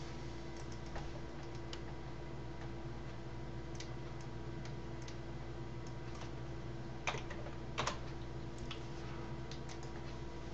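Computer keyboard typing: sparse key taps and clicks as a file name is entered, with two louder clicks about seven and eight seconds in, over a steady low hum.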